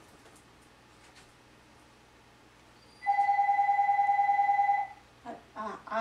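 A telephone ringing: after about three seconds of near quiet, one steady ring lasting about two seconds.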